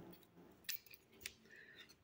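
A few faint snips of small scissors trimming the excess pile of needle-punch embroidery thread, the two clearest about half a second apart.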